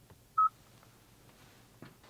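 A single short beep from the Hyundai IONIQ 5's infotainment touchscreen, the touch-feedback tone as a menu icon is pressed, about half a second in.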